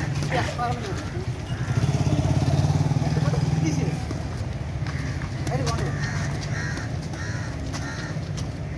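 A motorcycle engine running close by, loudest about two to four seconds in, over a steady low engine hum.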